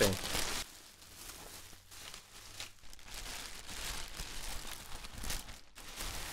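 Bubble wrap and a thin plastic bag crinkling and rustling as they are handled and pulled off a packaged guitar gig bag, in uneven spells, loudest just at the start.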